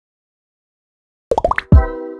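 Logo intro sting: after about a second of silence, a quick run of bubbly plops rising in pitch, then a deep hit with a held synth chord that slowly fades.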